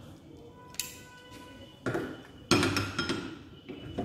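A metal Kater's pendulum knocking and clinking against its wall bracket as it is turned over and hung on its knife edge. A sharp clink about a second in leaves a ringing metallic tone, then come two louder knocks, the last and loudest at about two and a half seconds, which rings on.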